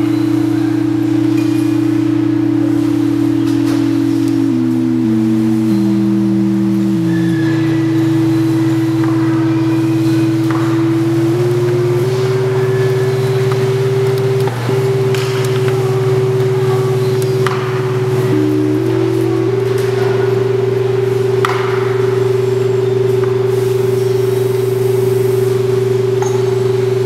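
Steady electronic tones from two loudspeakers of an oscilloscope frequency exhibit, their pitch set by vertical and horizontal frequency knobs. One tone holds while the other steps down in small jumps over a few seconds. Later the tones step up in short jumps, over a steady low hum.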